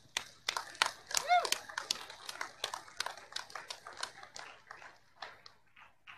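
Scattered applause from a small audience, thinning out over several seconds, with one short rising-and-falling call about a second in.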